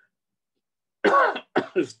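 Silence, then a man coughs and clears his throat about a second in, in a few short loud bursts.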